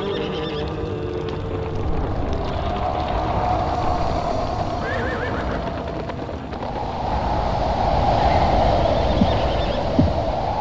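Title-sequence sound effects: a dense low rumble, with a short wavering high call about five seconds in and a swell about eight seconds in.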